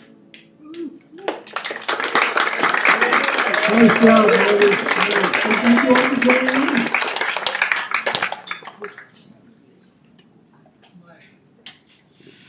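Audience clapping, with voices calling out over it, starting about a second in and dying away after about eight seconds at the end of a tune.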